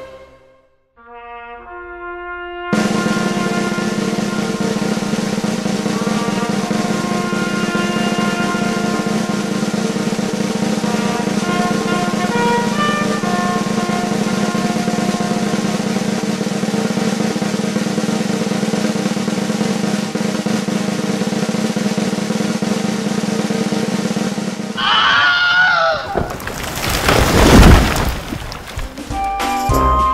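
Background music: a few soft notes, then a long snare drum roll under held chords for about 22 seconds. Near the end it breaks into sliding tones and a loud crash.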